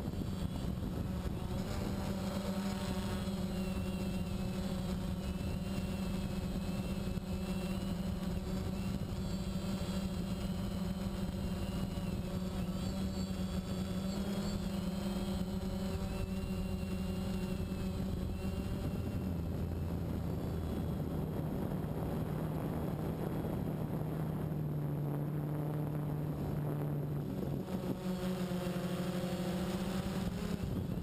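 Phantom quadcopter's electric motors and propellers humming steadily in flight, recorded by the action camera mounted on the drone. About two-thirds of the way through, the hum drops lower for several seconds, then rises back near the end.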